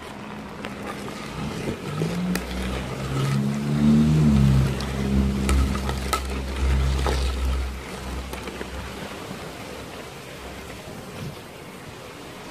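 A motor vehicle's engine passes by: a low hum that swells, its pitch rising and then falling, loudest about four seconds in and fading out by about eight seconds. A few sharp clicks sound over it.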